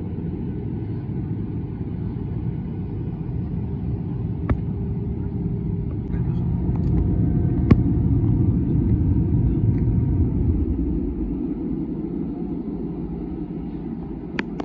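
Jet airliner cabin noise in flight: a steady low rumble of engines and airflow, louder for a few seconds in the middle.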